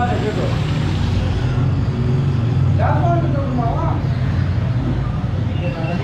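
Busy street background: a steady low rumble of traffic, with people talking briefly about three seconds in.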